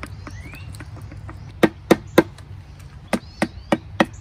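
A hammer tapping a flat pry blade into the seam of a Peugeot BA10 transmission case to split the case halves: six sharp taps, three at a time about a third of a second apart, starting about a second and a half in. Faint bird chirps can be heard behind.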